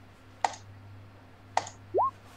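Two sharp computer clicks about a second apart, entering a dice roll, followed right at the end by a short rising tone.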